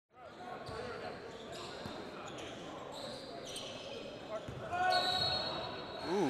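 Basketball scrimmage in a large gym: a ball bouncing on the hardwood court amid indistinct players' voices echoing in the hall, with brief high squeaks in the last couple of seconds.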